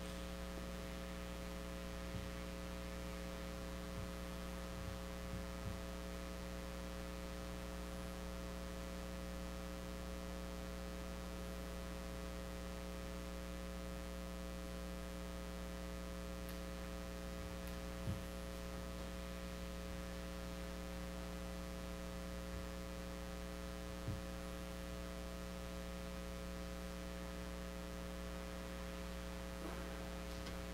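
Steady electrical mains hum, a low buzz of several even tones held unchanged, with a few faint knocks, the clearest about 18 seconds in and again about 24 seconds in.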